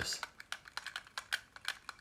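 Light, irregular clicks and taps of hard plastic, about a dozen in quick succession, as fingers handle and fiddle with a small plastic solar bobble toy.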